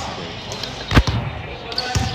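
A basketball bouncing on a hardwood court: one loud bounce about a second in and another near the end.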